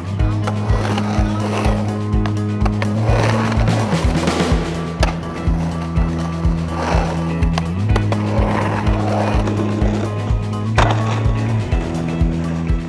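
Backing music with a steady beat and a bass line, over the rushing of skateboard wheels on concrete that swells and fades several times as the board carves a bowl. A sharp clack comes near the end.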